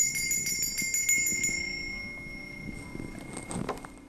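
Altar bells shaken at the elevation of the consecrated host, a rapid jingling that stops about a second and a half in, the ringing then dying away. A few soft knocks follow near the end.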